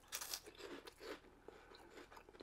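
Faint crunching of a mouthful of Chester's Ranch Fries, a crisp corn stick snack, being chewed: a quick run of crackly bites at first that thins to a few soft ticks by about a second in.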